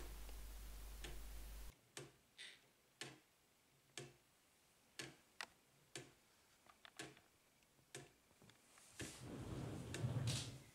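Handmade wooden gear clock (Clayton Boyer's Swing Time design, with a balance pendulum) ticking faintly, about one tick a second with a few lighter clicks between.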